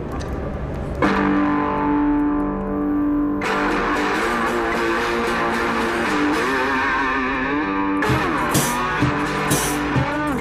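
Instrumental rock song intro: sustained distorted string notes come in about a second in over a low rumble, thicken into a wavering line, and drum hits with cymbals join near the end.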